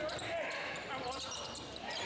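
Basketball game sounds in a gym: ball and sneakers on the hardwood court among indistinct voices echoing in the hall.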